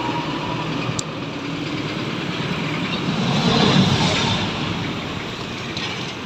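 Road traffic noise from passing heavy vehicles, swelling as a large vehicle goes by about three to four seconds in, with a sharp click about a second in.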